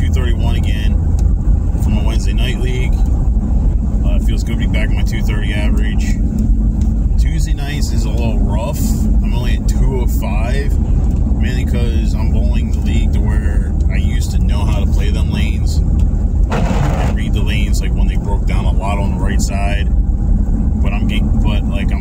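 Steady low rumble of a car's road and engine noise heard from inside the cabin while driving, under a man's talking. A short hiss cuts through about three quarters of the way in.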